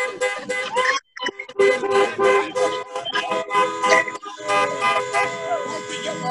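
Several car horns honking together in rapid repeated beeps, about four a second, with a short break just after a second in; people's voices are mixed in, heard through a video call's audio.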